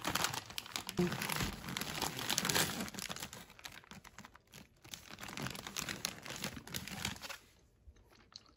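Wrapping paper and plastic packaging crinkling and rustling as they are handled, dying away shortly before the end.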